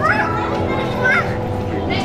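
Background music with children's high-pitched voices calling out over it, once near the start and again about a second in.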